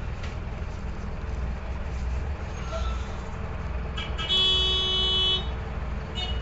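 Mercedes-Benz OM-904LA diesel engine of a low-floor city bus running with a steady low rumble. About four seconds in, a loud horn-like beep sounds for about a second.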